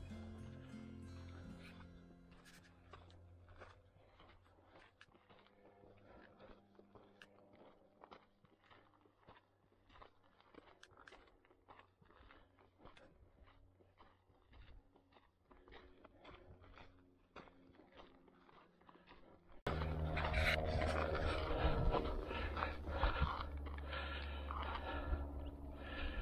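Faint footsteps crunching on a dirt and rock trail, about two steps a second, after music fades out at the start. About twenty seconds in, much louder music comes in suddenly.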